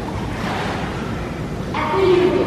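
Pool water sloshing and lapping, a steady noisy wash in an echoing indoor pool room, with a voice starting near the end.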